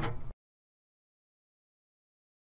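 Dead silence: the audio track cuts out completely about a third of a second in and stays silent.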